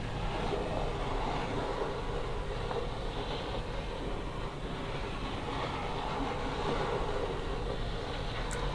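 Wooden planchette sliding across a wooden Ouija board under fingertips, a continuous rubbing scrape that runs unbroken.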